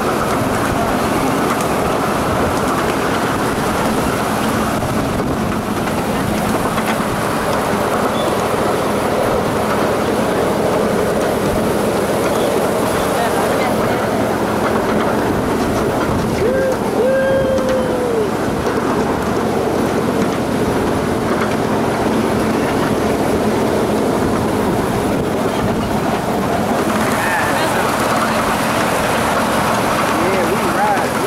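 Small ride-on park train running steadily along its track, heard from aboard a passenger car: a continuous rumble and rattle of the wheels and cars, with a steady hum. A brief pitched tone sounds about halfway through.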